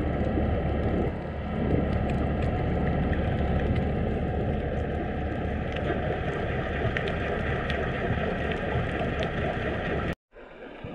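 Steady low underwater rumble picked up by a camera below the surface, with faint scattered ticks over it.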